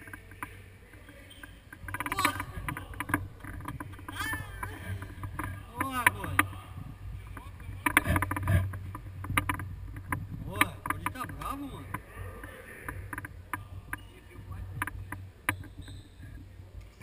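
Indoor futsal play: sharp knocks of the ball being kicked and bouncing on the hard court, several high gliding squeaks of shoes on the floor around four and six seconds in, and players calling out, over a low steady hum.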